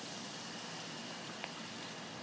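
Faint steady background hiss with a thin high tone, and one soft click about one and a half seconds in.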